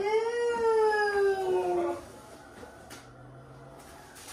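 A woman's long, drawn-out exclamation of delight, a single held 'ooh' of about two seconds that falls slowly in pitch, as she opens a gift box.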